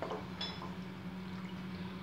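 Wooden spatula stirring water into mustard-masala paste in a cooking pot, the liquid sloshing faintly, with a light tap about half a second in.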